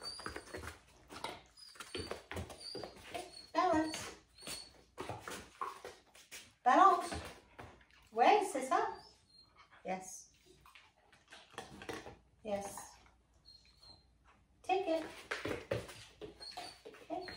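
Short bursts of low speech now and then, with soft taps and a few brief high squeaks, as a dog shifts its paws on foam balance pads.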